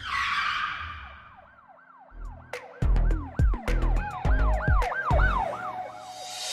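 Logo intro sting: a whoosh, then a siren effect wailing up and down about three times a second. About two seconds in, heavy bass hits and sharp clicks join it in a beat.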